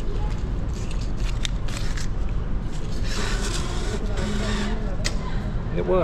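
Metro ticket machine's banknote acceptor whirring in two short spells, about three and four seconds in, as it takes in and returns a banknote it will not accept. A steady low hum and background voices run underneath.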